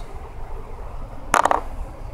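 Dice rattling briefly in cupped hands: a quick cluster of sharp clicks about one and a half seconds in, over a low background rumble.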